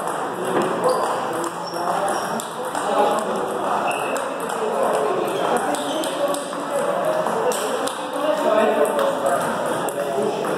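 Table tennis rally: the celluloid ball clicks off the rackets and bounces on the table, over voices chattering throughout.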